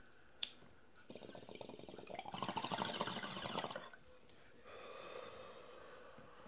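A sharp click, then water bubbling in a glass bong as smoke is drawn through it, growing louder for almost three seconds before stopping, followed by a quieter, steadier sound.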